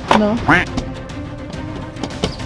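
A man exclaims "¡No!" in a drawn-out, sliding voice, followed by background music with held notes.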